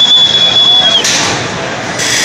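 An antweight combat robot's spinning weapon whining at a steady high pitch. About a second in, the whine dips and stops, and a harsh rushing, scraping noise takes over.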